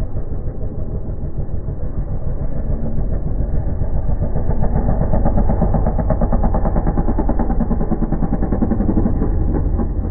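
Motocross bike engine on hard throttle, getting louder as the bike builds speed toward a jump ramp, with rapid firing pulses. The engine note falls away at the very end, as the bike leaves the ramp and goes airborne.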